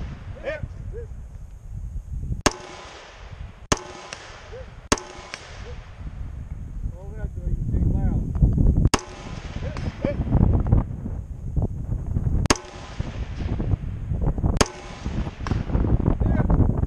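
Scoped semi-automatic rifle firing six slow, aimed single shots, spaced one to four seconds apart, each with a short echo.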